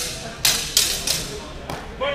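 Longsword blows in a close fencing exchange: about five sharp hits in quick succession, a few tenths of a second apart, with one more near the end, ringing briefly in a large hall.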